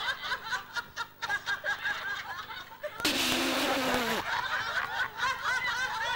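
Actors breaking into stifled, repeated giggling mid-take, with a louder, breathy outburst of laughter about three seconds in that lasts about a second.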